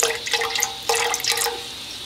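White vinegar poured into a pot holding about an inch of water: splashing and trickling in a few spurts with a steady gurgling tone, stopping shortly before the end.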